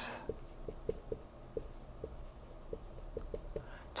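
Dry-erase marker writing on a whiteboard: a string of short, faint, irregular squeaks and taps as the tip moves across the board.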